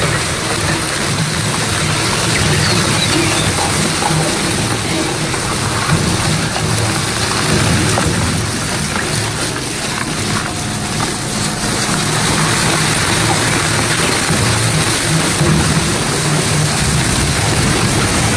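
50-horsepower CM H-50 hybrid dual-shaft shredder chewing a roll of perforated sandpaper trim between its counter-rotating knives. The shredding makes a loud, steady, dense noise with a low hum beneath it.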